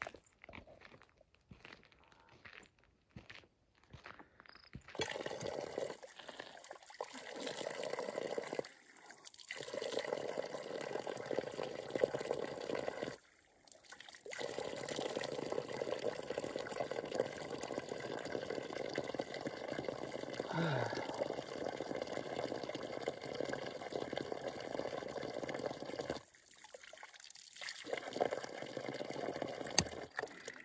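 Water pouring from a lever-handled drinking-water hydrant spout onto wet gravel and a puddle. It starts about five seconds in and runs steadily, stopping briefly three times.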